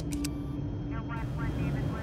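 Steady low drone of a propeller transport plane's engines, heard from inside the cockpit, with a few sharp clicks right at the start.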